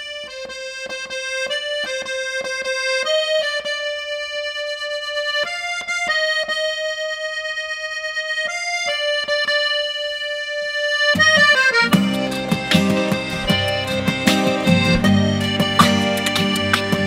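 Hohner button accordion (bayan) playing a slow melody, one held note at a time. About eleven seconds in, the texture fills out with chords and low bass notes, and strummed acoustic guitar comes in with a steady rhythm.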